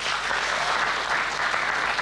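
Studio audience applauding, a steady patter of many hands clapping.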